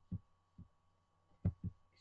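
A few soft, low thumps with one sharper click about one and a half seconds in: a computer mouse being clicked and handled on the desk, picked up by the microphone.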